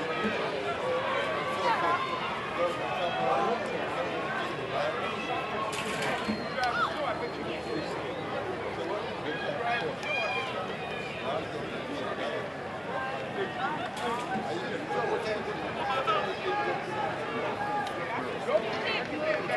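Spectators at a track meet chattering: a steady babble of many overlapping voices, with no single voice clear enough to make out words.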